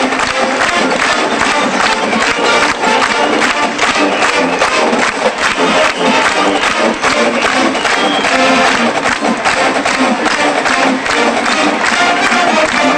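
Marching band playing full out, brass over a steady drum beat, with crowd noise from the stands underneath.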